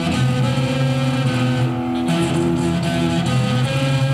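Live band music led by guitars, with several notes held over one another and the chord shifting about a second and two seconds in.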